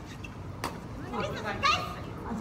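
Voices calling out in a gym, children's among them, with one sharp click about a third of the way in.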